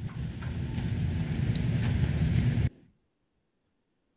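Steady low rumbling background noise with hiss from the tail of a recorded video message, cutting off abruptly about two and a half seconds in as playback ends, leaving silence.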